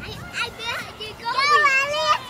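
Children's voices at play, with a child's long, high, wavering squeal from about halfway through.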